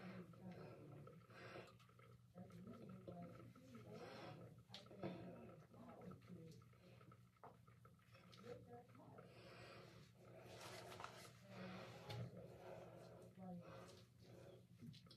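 Near silence: faint soft rubbing of soapy hands on the face, with light breathing.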